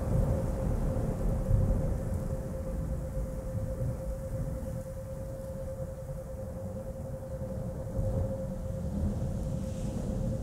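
Low rumble of thunder slowly dying away, under a steady 528 Hz pure tone.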